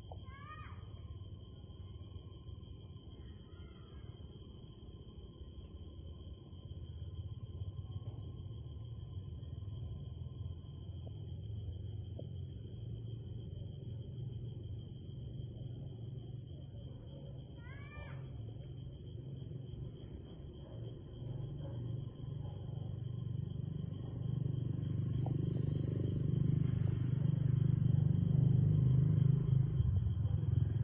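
Night insects trilling steadily at several high pitches, with a short call of three rising notes near the start and again about 18 seconds in. A low rumble grows louder over the last few seconds.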